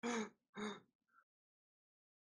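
Two short wordless vocal sounds from a person, about half a second apart, in the first second.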